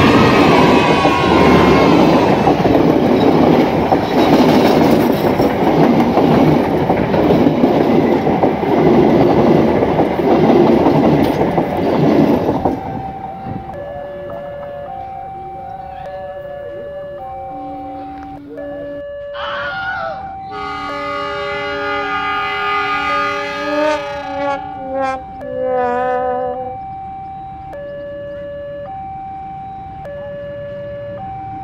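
A passenger train passing close to the track: loud rumble and rail noise for about twelve seconds, then the noise drops off as it clears. After that a two-tone warning signal alternates steadily high and low, and horn blasts sound several times in the middle of that stretch.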